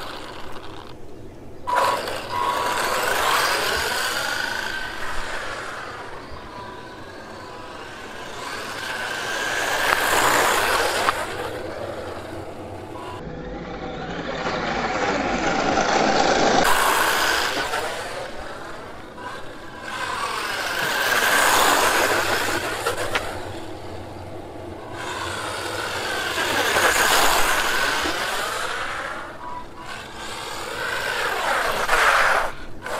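WLToys 124019 1:12 RC buggy driving back and forth on tarmac, its brushed electric motor running at speed. It grows loud as it passes close, about five times, and fades as it drives away.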